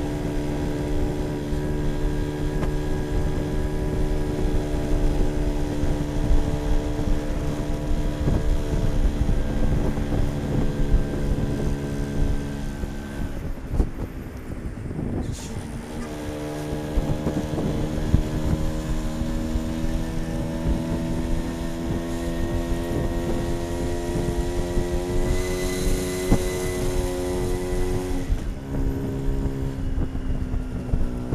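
Polini-tuned small motorbike engine running on the road, with wind on the microphone. The engine note falls away as the throttle closes about 13 seconds in, then climbs steadily as it pulls, and drops again near the end.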